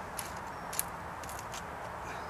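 Small hand saw cutting the top off a thin wooden fence stake: a few short, faint saw strokes over steady background hiss.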